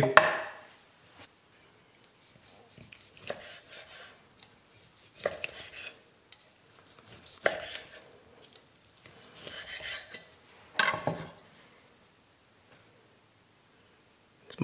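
Knife cutting into a smoked beef rib on a wooden cutting board and the meat being pulled off the bone: a handful of short handling sounds a second or two apart.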